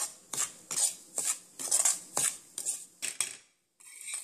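Spatula scraping and stirring semolina around a non-stick pan as it dry-roasts in ghee, in short strokes about two or three a second. It cuts off abruptly shortly before the end.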